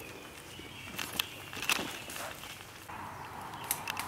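Footsteps on a leaf-littered dirt trail, with a few sharp knocks and rustles from the camera being carried and handled.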